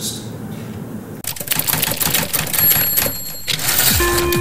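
Typewriter sound effect: a rapid clatter of keystrokes starting about a second in.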